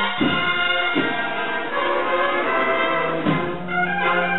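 Cornetas y tambores band (valveless cornets with drums) playing a processional march live: the massed cornets hold sustained chords, punctuated by drum strokes.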